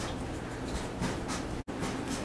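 Steady low background hiss of a quiet room, with no distinct event. The sound drops out for an instant about one and a half seconds in, where the recording is cut.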